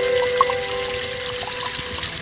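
A small waterfall splashing down a rock face in a steady rush, under background music holding long, steady notes.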